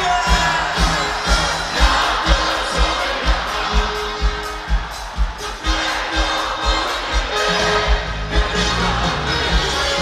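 Live band music played loud over a concert PA, with a steady dance beat whose kick drum thumps about twice a second, and a crowd cheering along.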